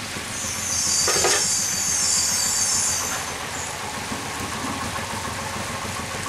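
Brinjal and rice curry bubbling and sizzling in a nonstick pan as it is stirred with a wooden spatula. The sizzle rises to a louder high hiss from about half a second to three seconds in, with a short scrape of the spatula around one second.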